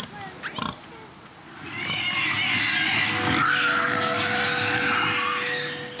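Pigs in an intensive confinement unit squealing, many voices overlapping into a loud din that starts about two seconds in.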